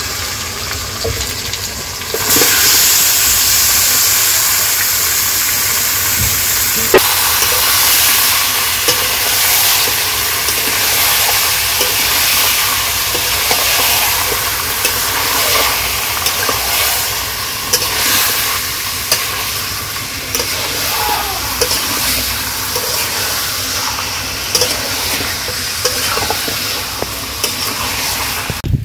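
Chicken pieces and potatoes sizzling in hot oil in a deep pan, the sizzle jumping louder about two seconds in. A metal spatula scrapes and clicks against the pan as the pieces are stirred.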